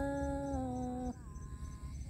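A singer holding one long, slowly falling sung note that ends about a second in, the drawn-out close of a phrase in a Tai Dam (Thái) folk love-song duet; a fainter held tone follows.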